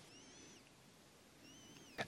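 Near silence: quiet room tone with two faint, high chirps, one near the start and one near the end, each rising and then falling in pitch.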